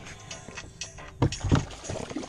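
Knocks against a canoe hull while fighting a pike: two dull thumps about a third of a second apart, a little past halfway, with lighter clicks and clatter around them.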